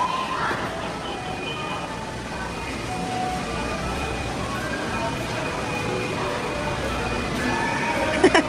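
Amusement-arcade background: music and electronic jingles from the arcade machines and kiddie rides, with voices in the background.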